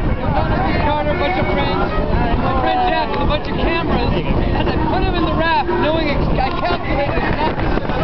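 Steady rush of wind and water noise aboard a moving sailboat, with people talking indistinctly over it.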